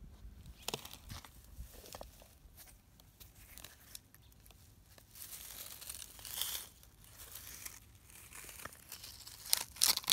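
Faint rustling and crackling of dry grass and debris as hands handle a potato trap on the ground, with scattered small clicks and a louder rustle about five to seven seconds in.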